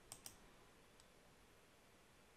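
Near silence, with a faint computer mouse click (press and release) just after the start.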